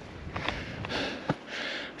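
A hiker's breathing on a steep climb, a few short breaths, with several sharp clicks of steps on the rocky trail.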